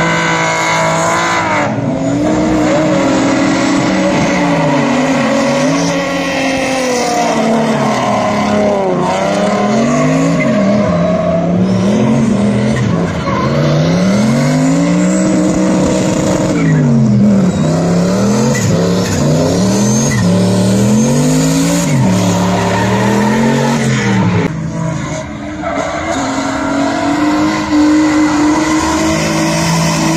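A drift car's engine revving up and down over and over as the car slides sideways, its pitch swinging every second or so, over the squeal and skid noise of tires spinning on asphalt.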